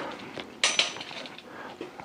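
A light metallic clink about half a second in, with a brief high ring that fades.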